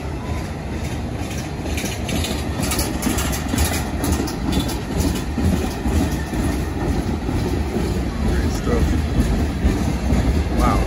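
A slow-moving freight train of autorack and tank cars passes close by: a steady rumble of steel wheels on rail. A cluster of sharp clicks and knocks comes about two to four seconds in.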